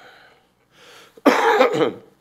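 A man coughing: two soft, breathy lead-ins, then one loud cough a little over a second in that lasts about half a second.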